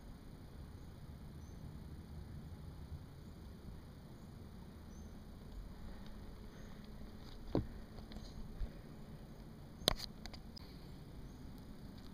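Faint outdoor background with a few isolated sharp clicks, the loudest about ten seconds in.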